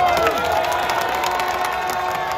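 Football stadium crowd shouting and cheering, many voices overlapping in long held yells.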